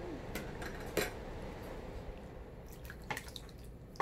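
A few light, separate clinks of kitchenware as a metal bowl of salad dressing is handled and tipped over a glass mixing bowl, the loudest knock coming right at the end.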